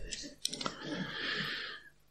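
A few sharp clicks about half a second in, then about a second of faint breathy noise with weak voices under it.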